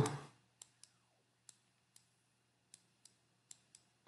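Stylus tapping on a pen tablet while handwriting: faint, scattered clicks, about eight in four seconds.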